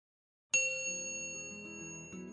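Intro jingle: silent for half a second, then a bright chime strikes suddenly and rings on, slowly fading, while a run of lower notes begins under it.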